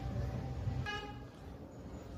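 A short, faint vehicle-horn toot about a second in, over a steady low hum.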